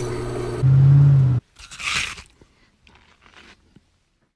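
A metal lathe running, with a loud low motor hum for under a second that cuts off suddenly. Then a single short crunch, like a bite into something crisp, followed by a few faint crackles.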